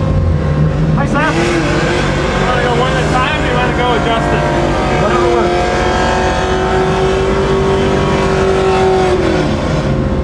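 Pontiac GTO drift car's V8 idling with a heavy, steady low rumble, heard from inside the cabin. Over it a higher wavering tone comes and goes, settles into a held pitch around the middle and drops away near the end.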